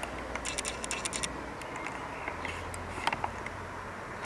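A few short scratchy rustles and clicks, a cluster about half a second to a second in and a few more near three seconds, over a steady low rumble.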